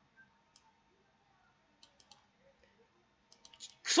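A few faint, irregularly spaced clicks in a quiet small room, some singly and a quick cluster of three near the middle; a man's voice starts just before the end.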